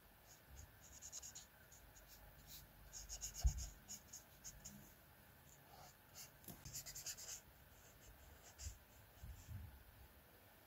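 Brush-tip marker nib stroking across sketchbook paper in short, scratchy strokes while colouring in, in several quick clusters. A soft low thump about three and a half seconds in.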